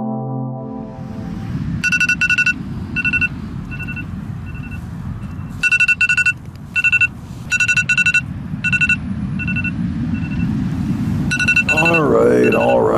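Phone alarm going off: short, high, two-tone beeps in quick clusters that repeat every second or so, over a low steady background rumble. Background music fades out in the first second.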